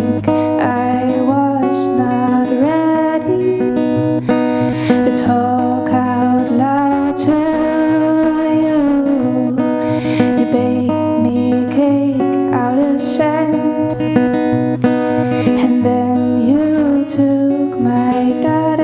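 Steel-string acoustic guitar strummed in a steady rhythm, accompanying a song.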